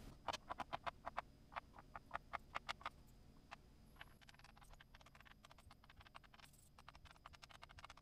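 Small steel gauge blocks clicking against each other and into the slots of their case's holder as they are packed away by hand: a quick run of light clicks in the first three seconds, then fainter, sparser ticks.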